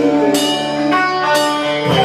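Live rock band playing: guitar over a drum kit, with two sharp drum-and-cymbal hits about a second apart.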